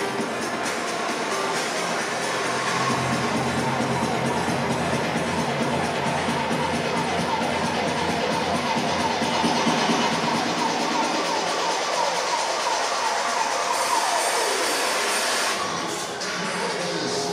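Music playing over the hall's sound system during the posing rounds, with the audience cheering and shouting over it.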